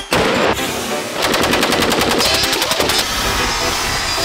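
Automatic gunfire: a loud shot right at the start, then a rapid, even burst lasting nearly two seconds from about a second in.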